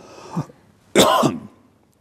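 A single loud cough about a second in, preceded by a short throat sound.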